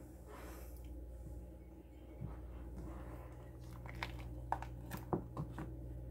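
Silicone soap mold and soap bars being handled: a few light clicks and taps, mostly in the second half, over a steady low hum.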